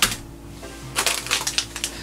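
Packaged LEGO items being handled in a plastic storage bin: a sharp knock at the start, then a cluster of short clicks and crinkles about a second in as a foil minifigure blind bag is picked up. Quiet background music runs underneath.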